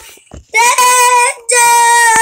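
A child singing wordless, high held notes: two long notes of about a second each, the first beginning about half a second in, with a brief break between them.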